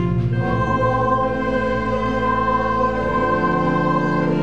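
Choir singing slow, sustained chords of church music, with a new chord coming in about half a second in.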